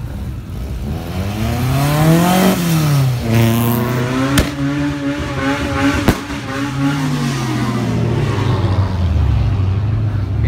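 Car engine revving hard: the revs climb for about two seconds, drop sharply about three seconds in, hold high and steady, then ease off and start climbing again near the end. Two sharp cracks cut through about four and six seconds in.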